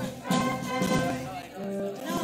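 A brass band playing, with held notes and sharp note attacks.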